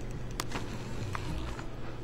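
A few light clicks of kitchen utensils against dishes, over a steady low hum.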